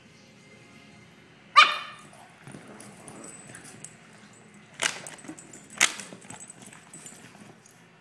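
Boston Terrier puppies at play: one loud, high yip about a second and a half in. Then low scuffling and two sharp, short sounds about a second apart near the middle.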